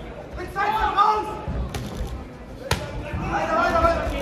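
Voices calling out in a large hall, with two sharp thumps of blows landing in the ring, the first under two seconds in and the second about a second later.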